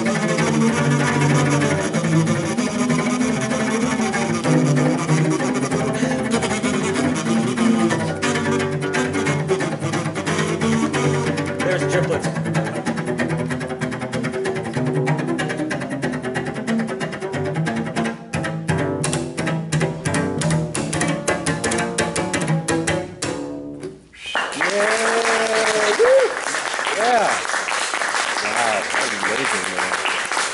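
Bowed cello with a kazoo buzzing a melody over it. From about 8 seconds the cello plays a fast run of quick notes under the kazoo, an attempt at kazoo triplets against sixteenth notes on the cello. The music stops about 24 seconds in and applause follows.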